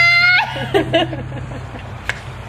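Young women laughing: a high-pitched squeal held for the first half second, then short broken giggles that trail off.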